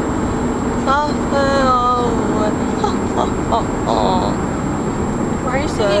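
Steady road rumble inside a moving car's cabin, with a person's low, wordless murmuring and vocal sounds over it.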